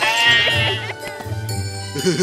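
A cartoon sheep bleat sound effect: one drawn-out baa lasting about a second at the start, over bouncy children's Christmas music.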